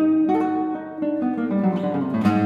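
Classical guitar playing: a loud chord or note struck at the start, followed by a run of single plucked notes whose lower notes step down in pitch in the second half.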